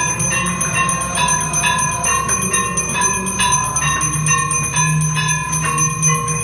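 Temple bells rung in a steady rhythm for the aarti, about two to three strikes a second, each strike ringing on at the same pitch, over a low steady drone.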